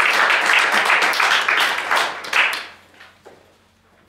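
Audience applauding, a dense patter of many hands clapping that dies away about three seconds in.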